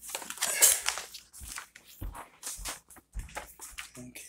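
Irregular close-up handling noises: rustling, scraping and small knocks, loudest about half a second in.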